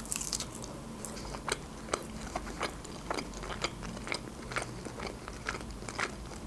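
A person chewing a bite of crisp baked pastry roll close to the microphone, a string of small irregular crunches, roughly two a second.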